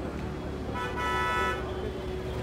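A car horn honks once, for under a second, about three-quarters of a second in, over a steady low rumble of city traffic.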